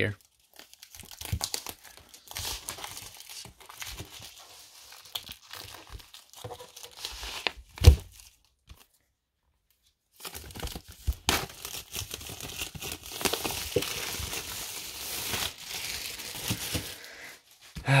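Plastic wrapping being torn and crinkled off a cardboard laptop box, with many small crackles. There is one sharp knock about eight seconds in, then the sound cuts out completely for about two seconds before the crinkling resumes.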